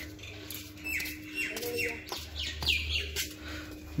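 Birds chirping: short, falling chirps in quick runs, about a second in and again near three seconds.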